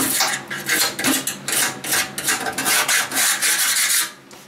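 Hand tool scraping rust from a steel tractor seat pan, in quick repeated strokes at about three a second that stop at the end.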